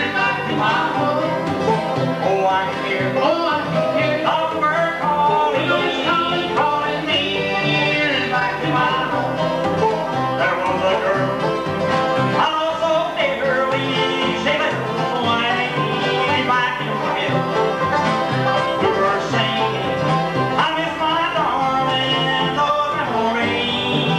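Bluegrass band playing live: banjo, acoustic guitars and upright bass.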